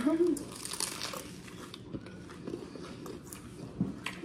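Biting into a crisp-toasted sandwich with fried breadcrumb-coated chicken close to the microphone: a crunchy bite over about the first second, then quieter chewing.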